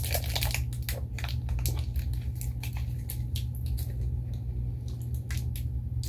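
Wet mouth sounds of a hard-candy lollipop being sucked and licked, with scattered short clicks and smacks throughout.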